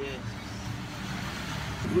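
Steady low engine noise of passing motor traffic, with no distinct events.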